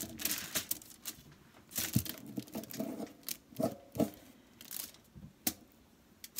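Aluminium foil crinkling, with a few light taps and scrapes, as a fork is worked in flour-and-paprika paint on a foil palette.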